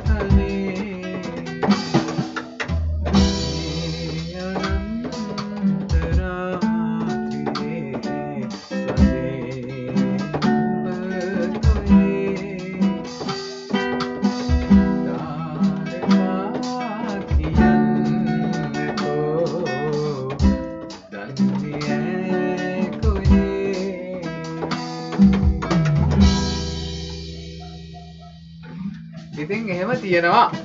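Acoustic guitar strumming and picking chords over sustained notes and low bass notes from an electronic keyboard, played as a loose improvised jam. The playing thins out and dies down shortly before the end.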